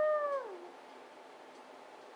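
A woman's drawn-out, high-pitched wincing moan that falls in pitch and dies away about half a second in, followed by quiet room tone.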